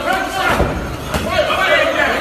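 Boxing gloves landing punches in sparring: two sharp thuds, about half a second and just over a second in, over voices talking.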